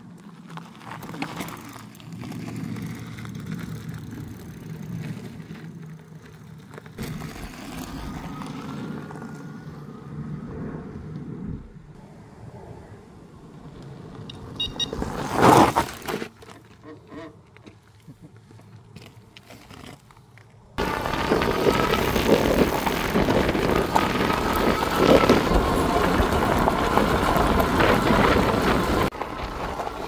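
Cyrusher Ovia fat-tyre electric bike being ridden on a gravel lane. The first part is heard from the roadside, with a brief loud rush about halfway. About two-thirds through, the sound jumps to a loud, steady rush of wind and tyre noise heard from on the bike, with a faint whine from its electric motor.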